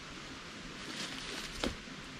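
Faint rustling of a nylon support strap being handled and tied off around the tree against the ladder stand, with one light click about one and a half seconds in.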